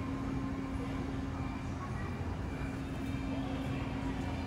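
Steady low rumble and hum of underground station ambience, with no distinct events.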